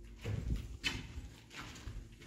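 A few irregular footsteps on a hard, gritty floor, with one sharper scuff or click near the middle.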